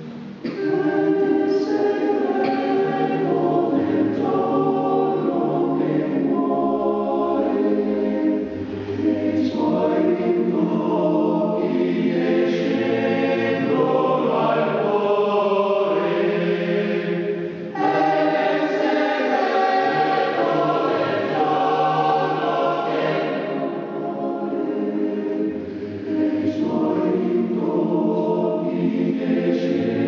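Male voice choir singing a cappella in harmony, in long sustained phrases with short breaks between them.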